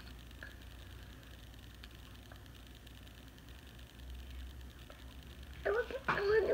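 Quiet room tone with a steady low hum and a few faint light clicks from handling at the table. A voice starts just before the end.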